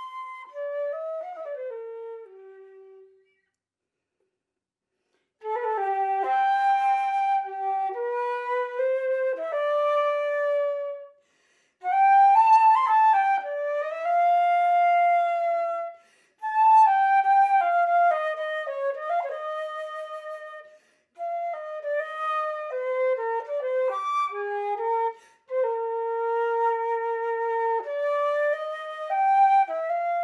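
Solo concert flute playing a slow, plaintive melody with sliding pitch bends between some notes. A falling phrase dies away about three seconds in, and after two seconds of silence the playing resumes in phrases broken by short pauses for breath.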